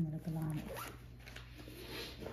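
A short hummed vocal sound at the start, rising in pitch as it ends, followed by faint rustling.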